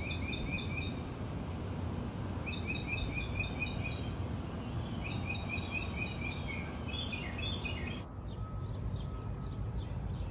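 A songbird singing three phrases of quick, evenly repeated chirps, the last phrase ending about three quarters of the way through, over a steady low outdoor rumble.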